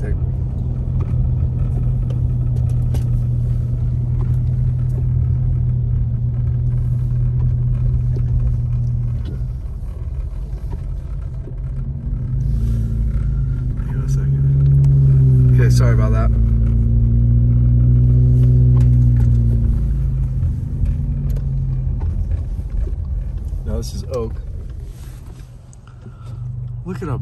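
A car's engine and tyre noise on a snow-covered road, heard from inside the cabin as a steady low rumble. About twelve seconds in, the engine note rises and grows louder, wavering for several seconds before easing back.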